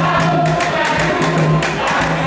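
A group of voices singing together over a steady, fast percussion beat of about four strokes a second.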